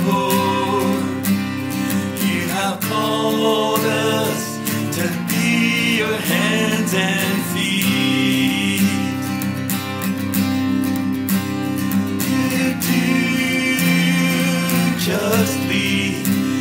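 A worship song sung by a solo voice to acoustic guitar accompaniment.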